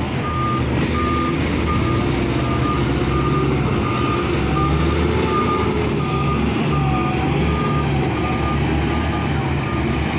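Komatsu HD465 dump truck's reversing alarm beeping about twice a second over its running diesel engine as the truck backs into position to be loaded; the beeping stops near the end.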